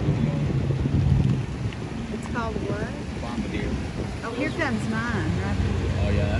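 Jet ski engines running as the personal watercraft speed off across the water, a steady low hum that is loudest at the start and swells again near the end. Wind buffets the microphone throughout.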